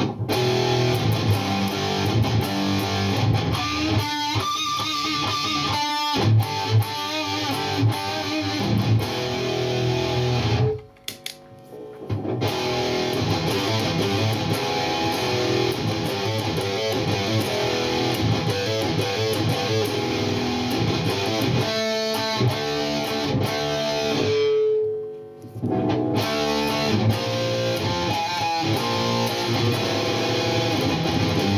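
Distorted seven-string electric guitar playing heavy riffs through a Mesa Boogie Dual Rectifier's distortion channel. After a short pause about 11 seconds in, the MXR Distortion III pedal is switched on as a boost in front of the amp, and the playing goes on with a held note fading out near 25 seconds.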